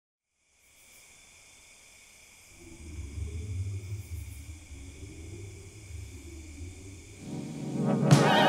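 Quiet ambient intro of the song: a faint steady high ringing over hiss, joined about two and a half seconds in by a low rumbling drone, then the band's music swelling in near the end.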